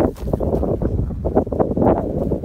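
Wind buffeting the phone's microphone, a dense rumble with scattered short knocks and rustles.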